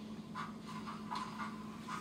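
Model steam locomotive's SoundTraxx Tsunami2 sound decoder playing its three-cylinder chuff cadence at a slow crawl: faint, soft chuffs a few times a second in an uneven, offset rhythm over a steady low hum.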